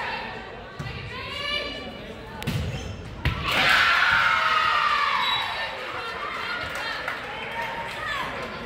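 A volleyball hitting the hardwood gym floor twice, a little under a second apart, among voices calling out and cheering in a large echoing gym. The loudest part is the shouting just after the second hit.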